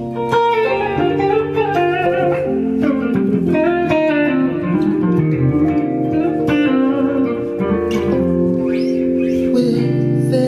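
Clean-toned Gibson Les Paul Standard electric guitar playing a slow R&B chord progression in B-flat (C minor, G minor, F), with a walking triad movement and hammered-on notes added between the chords. The notes are plucked, and long low tones are held underneath.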